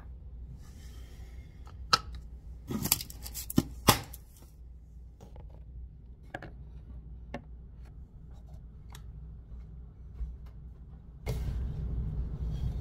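Plastic protein shaker cup and its lid being handled on a hard countertop. A cluster of sharp clicks and knocks comes about two to four seconds in, then scattered lighter taps, and a low rumble rises near the end.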